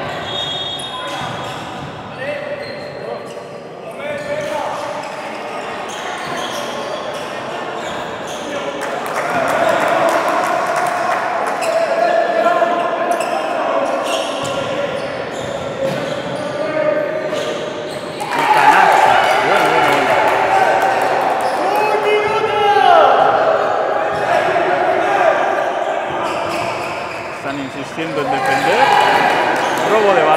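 Basketball game in an echoing sports hall: the ball bouncing on the court among players' and spectators' voices calling out, the voices growing louder about a third of the way in and again just past the middle.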